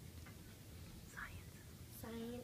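Faint whispering over a low room hum.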